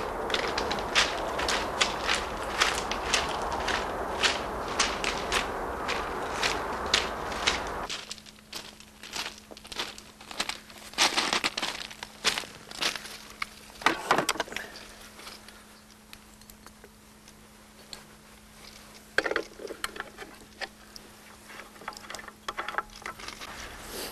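Footsteps, about two a second, over a steady low rumble that stops abruptly about eight seconds in. After that there is a low steady hum with a few scattered knocks.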